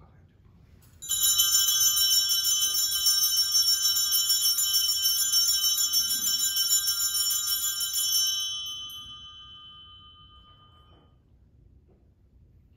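Altar bells, a cluster of small bells, shaken continuously for about seven seconds and then left to ring out and fade, rung at the elevation of the consecrated host.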